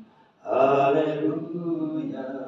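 A man's unaccompanied voice singing slow, drawn-out notes in a prayerful chant, with no instruments. A short pause at the start, then one long held phrase about half a second in.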